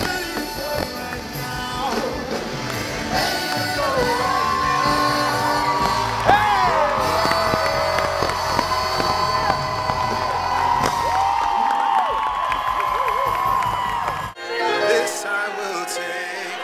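Live concert music heard from the audience in an arena: a singer's amplified voice gliding and holding notes over the band, with crowd whoops and cheers. The music cuts off suddenly near the end, leaving quieter sound.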